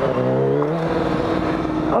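Sport motorcycle engine running at a steady speed while riding, its pitch rising slightly early on and then holding, with wind rush over it.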